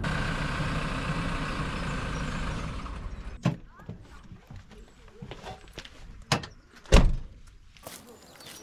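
Land Rover Defender 110 engine running for about three seconds, then falling quiet. A door clicks open, a few knocks follow, and a door is slammed shut near the end, which is the loudest sound.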